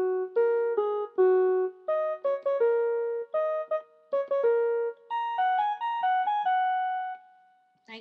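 Small electronic keyboard playing a simple tune one note at a time, in short phrases of a few notes. The playing stops about a second before the end.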